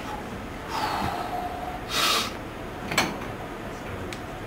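A weightlifter's short, sharp hissing breath about two seconds in as he braces under a heavy barbell and lowers into a back squat, followed by a single sharp click about a second later.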